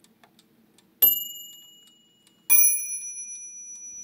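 Hampton crystal regulator mantel clock with a Franz Hermle movement striking its two bells in turn over a faint tick: a higher bell struck about a second in and left to ring out, then a lower bell struck about a second and a half later, ringing on and slowly fading.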